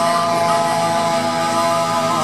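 Live rock band playing through a PA, with one long, steady held note sounding over the band.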